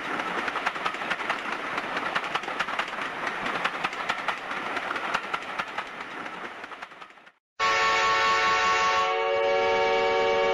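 Passenger train running, its wheels clicking and rattling over the rails, fading out about seven seconds in. After a brief gap the train's horn sounds a steady chord of several notes, held to the end.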